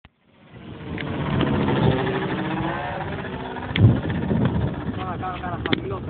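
Engine of a 2.5 m radio-controlled Extra 330S model aerobatic plane running in flight, a steady drone whose pitch shifts slightly, fading in at the start. A brief thump about four seconds in.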